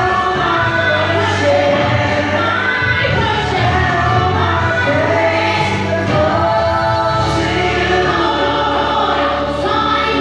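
A woman singing a gospel worship song into a microphone over musical accompaniment, with choir-like voices in the mix. The singing and music run on steadily without a break.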